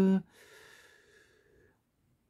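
A man's drawn-out word ends about a quarter second in. A faint breath follows, then near silence.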